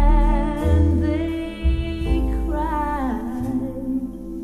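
A recorded song played back over Aries Cerat horn loudspeakers driven by tube mono amplifiers and heard in the room: a singer holds long notes with vibrato, one sliding down near the end, over deep bass notes.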